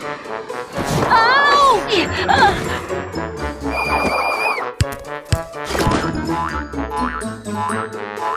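Cartoon sound effects over bouncy children's background music: two sharp knocks about five seconds in, then a springy boing as a toy pops out on its spring.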